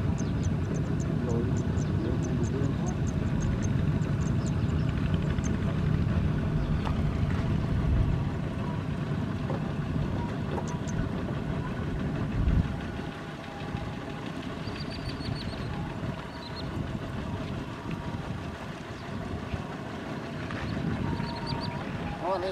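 Single-cylinder diesel engines of Kubota ZT155 power tillers running as several loaded tiller-trailers pass, a dense low engine clatter. It is loudest for the first half and drops noticeably about twelve seconds in.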